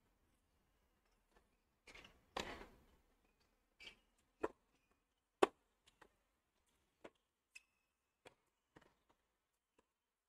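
A tennis ball bounced on a hard court before a serve: a series of sharp knocks, about half a second to a second apart, in the second half. A short scuffing rush comes a couple of seconds in.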